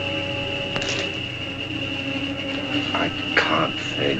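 Old orchestral film score with long held notes, one high note sustained throughout. A few short, sharper sounds come near the end.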